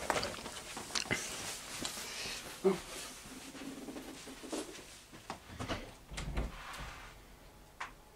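Scattered knocks, bumps and rustles of a person getting up and moving off, the sharpest about three seconds in and a low thump about six seconds in.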